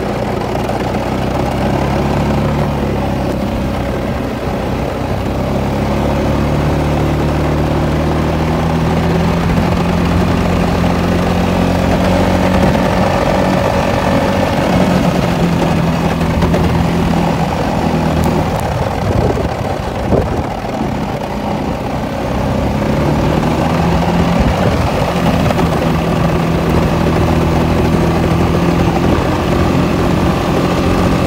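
A 2015 Honda Rubicon ATV's single-cylinder engine runs steadily under load as the quad pushes a plow blade through snow. Its note climbs a little over the first several seconds and drops briefly about two-thirds of the way through as the throttle eases, then picks up again.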